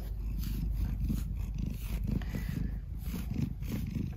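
Domestic cat purring steadily in a low, pulsing rumble while it is brushed.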